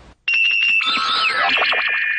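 Short chime-like musical sting: a high held tone, then a quick run of bell-like notes sliding downward into a held chord.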